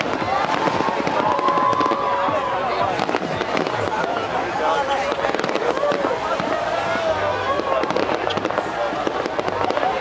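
Fireworks going off, a dense run of quick pops and crackles, with people's voices talking over them.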